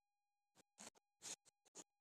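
Phone-handling noise: about six short scratchy rubs as a hand and arm brush against the phone's microphone.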